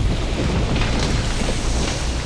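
Steady, loud, deep rumble with a hiss over it, a cinematic sound-design effect that begins just as the courtroom doors swing open.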